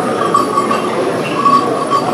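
Din of a crowd in a large, busy room, with a high wavering tone that breaks off and returns a few times above it.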